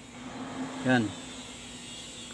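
A steady low hum of unknown source, with a man saying one short word about a second in.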